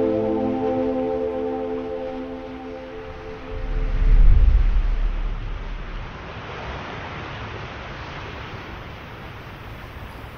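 An ambient music drone of several held tones fades out over the first three seconds. A deep low rumble then swells and falls away about four seconds in, the loudest moment. It gives way to a steady hiss of ocean surf and wind.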